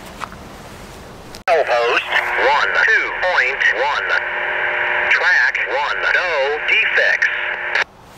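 A voice transmission over a handheld railroad scanner radio, narrow and tinny. It cuts in suddenly about a second and a half in and cuts off just before the end.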